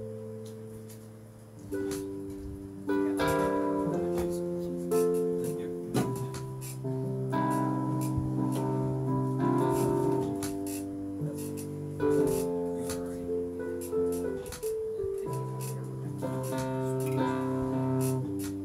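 Nord Electro 2 stage keyboard playing a slow instrumental passage of sustained chords, the chords changing every second or so.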